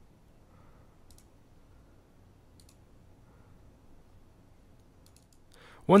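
A few faint computer mouse clicks over low room hiss: one about a second in, one at about two and a half seconds, and a quick cluster just after five seconds, as a file is chosen and uploaded.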